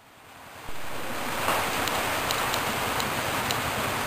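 A steady rushing noise with no pitch, fading in over the first second and then holding level, with a few faint high ticks.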